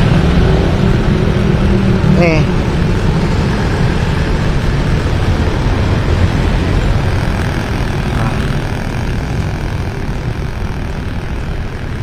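Steady street-traffic noise heard from a moving pedal rickshaw, with a low rumble throughout. A nearby motor vehicle's engine runs steadily for the first two seconds or so, and a voice is heard briefly about two seconds in.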